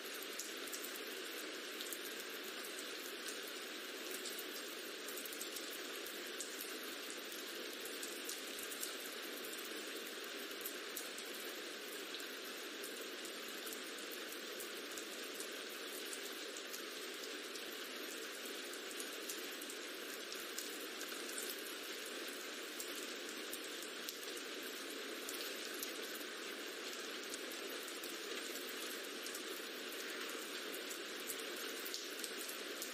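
Background rain-sound track: a steady, even rain hiss with fine scattered droplet ticks throughout.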